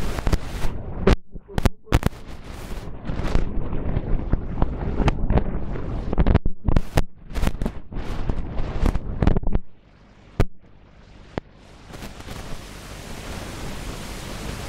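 A man speaking loudly through a handheld microphone and loudspeaker, his words coming with harsh pops. He stops about two-thirds of the way through; a single sharp pop follows, then a steady hiss that rises near the end.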